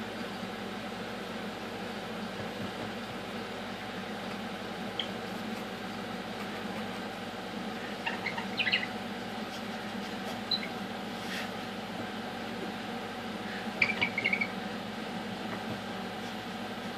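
Rainbow lorikeet giving short, high squeaky chirps: a single one, then small clusters about eight seconds in and again near the end, the last cluster the loudest, over a steady room hum.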